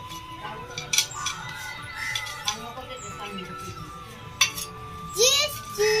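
A large knife blade knocking and scraping on a husked coconut's shell to make a hole for draining the water, with a few sharp knocks about a second in and again near the end.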